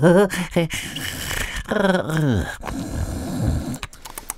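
A performer's voice acting out the hare falling asleep: a short drawn-out vocal sound, then a low, rough, mock snore in the last second or so.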